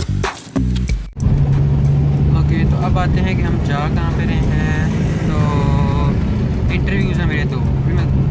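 Inside a moving car: the cabin's steady low engine and road drone, starting suddenly about a second in as background music cuts off.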